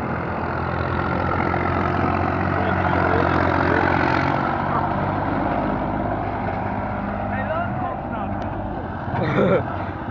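Massey Ferguson 35X tractor's diesel engine running steadily, growing louder to a peak about three to four seconds in and then easing off.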